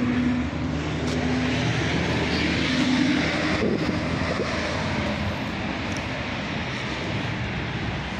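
Steady engine drone with a low hum that holds and shifts slightly in pitch, over an even background hiss.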